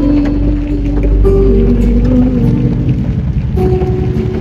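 Acoustic guitar playing between sung lines of a song, with a few long held notes that change pitch every second or so, over rain falling on the car.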